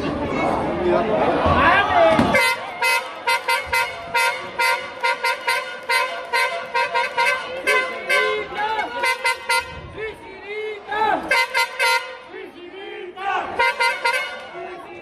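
A horn blown in quick, repeated short toots, about three a second, starting a couple of seconds in and going on for several seconds, with a few more blasts after a brief gap. Crowd noise and shouting voices surround it.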